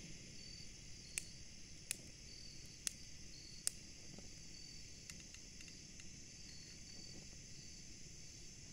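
A hand-held lighter clicked four times, roughly a second apart, during the first half, without lighting the gas stove. Insects chirp steadily behind it.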